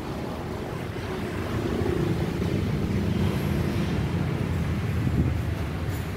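Low, steady rumble of a vehicle engine running nearby, with a faint hum in it, swelling a little after the first second and easing toward the end.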